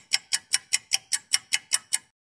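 Clock-ticking sound effect: an even run of sharp ticks, about five a second, a thinking-time countdown while a quiz question waits for its answer.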